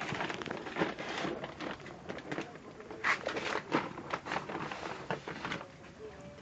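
Plastic bags and a soil sack rustling and crinkling as they are handled, in irregular short crackly bursts, the loudest a little after the middle.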